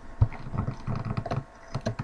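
Computer keyboard typing: quick irregular clicks and taps, several a second, pausing briefly just past the middle.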